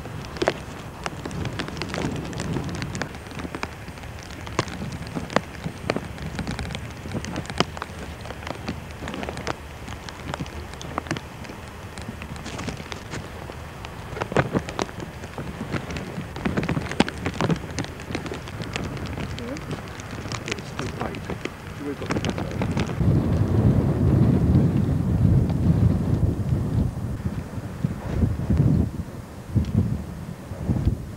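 Outdoor camcorder recording of digging in wet soil: scattered clicks and knocks from the spade and from handling the mud-caked metal parts. In the last several seconds wind buffets the microphone with a rough, louder rumble.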